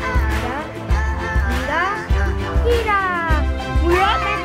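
Background music with a steady bass beat, with high sliding, voice-like tones over it.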